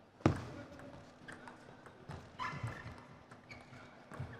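Table tennis rally: the plastic ball clicks off bats and table in short, uneven knocks, the loudest just after the start, with a brief high squeak about halfway through.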